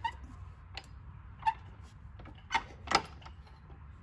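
Cast-iron four-speed manual transmission case being pushed and jiggled by hand against the bell housing, giving a few short sharp metal clunks and clicks, the two loudest close together near the end. The input shaft does not slide home: the transmission sits a little too high to line up with the clutch.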